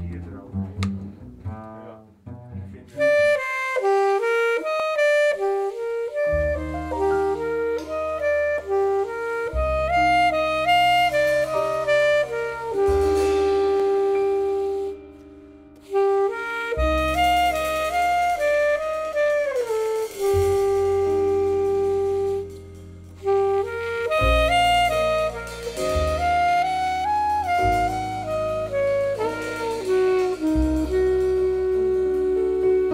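Alto saxophone playing a jazz melody line, starting about three seconds in, joined about six seconds in by upright bass holding long low notes.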